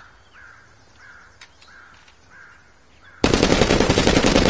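A burst of fully automatic fire from an AR-10 rifle: a loud, rapid, unbroken string of shots that starts suddenly about three seconds in. Before the burst, a bird calls several times at an even pace.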